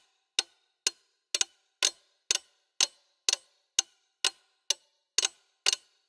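Sampled pocket-watch ticks playing as a looped pattern at about two ticks a second, with a few ticks doubled and the spacing slightly uneven: timing faults added by the library's reliability setting.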